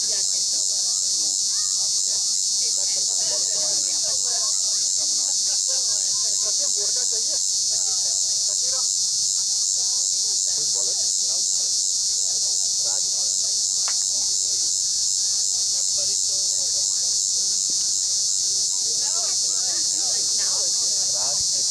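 Steady, high-pitched chorus of summer insects with a fine, even pulse, the loudest sound throughout. Faint distant voices are heard under it now and then.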